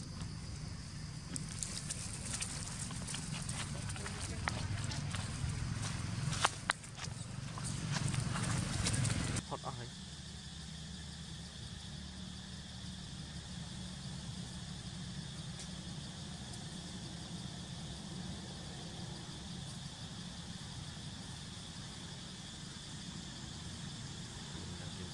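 Rustling and scattered sharp clicks as baby macaques scramble through grass and dry leaves, loudest a few seconds before a sudden change about nine seconds in. After that comes a steady, even high-pitched outdoor drone.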